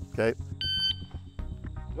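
A shot timer's start beep: one short electronic tone, about a third of a second long, about half a second in, signalling the shooter to draw. Background music runs underneath.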